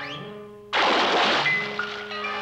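Cartoon spray sound effect: a sudden loud hiss, about a second long, starts just under a second in as the water machine's nozzle squirts into the mixer. It plays over light background music, which opens with a short rising whistle.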